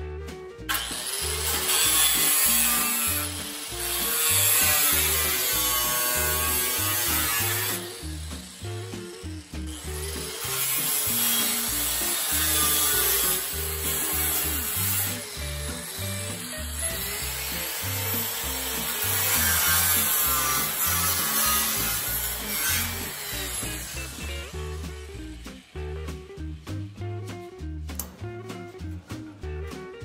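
Angle grinder with a thin cut-off disc slicing a sheet-steel drip rail. It cuts in several passes with short breaks near 8 and 10 seconds, its pitch sagging and recovering as the disc bites, and stops about 25 seconds in.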